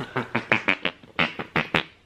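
A rapid string of about a dozen short, smacking kisses planted on a baby's cheek, with a brief pause about halfway through.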